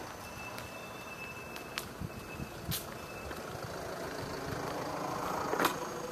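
Steady outdoor background noise with a few sharp clicks, the loudest near the end.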